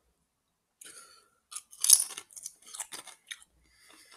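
Doritos tortilla chips crunching as they are chewed: a run of crisp crackles from about a second in, loudest near the middle, fading out shortly before the end.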